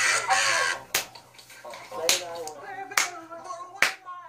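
A man laughing hard and clapping his hands, four sharp claps roughly a second apart, between stretches of laughing voice. A loud, harsh burst of voice opens the stretch.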